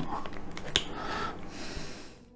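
Plastic parts of a scale-model car seat being handled and pressed together with a small flat screwdriver, with light rustling and one sharp click about three-quarters of a second in.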